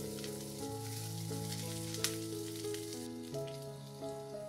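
Sliced red onions and garlic sizzling in oil in a nonstick frying pan as they are stirred with a wooden spatula, with one sharp click about halfway through. The sizzle drops off about three seconds in. Soft background music with held notes plays throughout.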